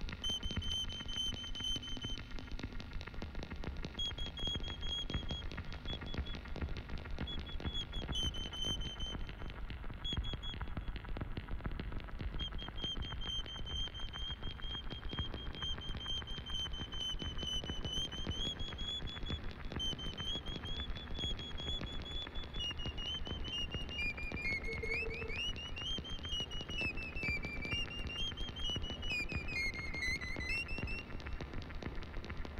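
No-input mixing: a mixing desk fed back into itself, making a dense crackling rattle over a low rumble. A high whistling feedback tone comes and goes, holding fairly steady at first, then wavering and stepping up and down in pitch over the last several seconds.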